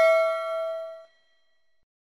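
Notification-bell sound effect: a single ding with several ringing tones, the lowest the strongest, dying away and then cutting off abruptly about a second in.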